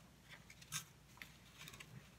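Faint rustles of a sheet of paper being handled and turned over: a handful of soft, separate scrapes, the clearest about three quarters of a second in, over near quiet.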